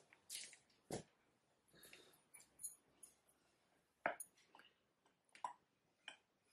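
Near silence with a few faint, scattered clicks and soft rustles, the clearest about a second in, just after four seconds and about five and a half seconds in: small handling noises as wool fibre and yarn are worked by hand at a wooden spinning wheel.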